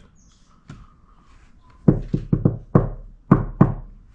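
A quick run of about seven short knocks or taps, starting about two seconds in and lasting under two seconds, each with a dull thud beneath it.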